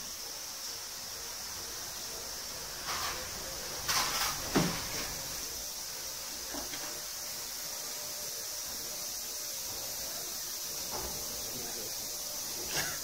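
Silver wire and pliers handled at a steel draw plate, giving a few short knocks and scrapes about three to four and a half seconds in over a steady background hiss.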